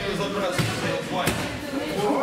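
Two sharp blows landing in a kickboxing bout, about two-thirds of a second apart, over background voices.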